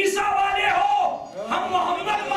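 A man's loud, raised voice calling out, with a crowd of voices joining in, in a large hall.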